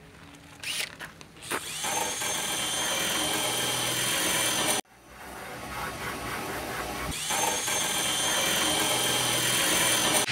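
Cordless drill running against the metal of a car's rear window frame. It cuts off suddenly about halfway through, then starts again and builds back up to a steady run.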